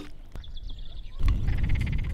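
Frogs croaking in rapid pulsing trains, with a loud low rumble joining about a second in.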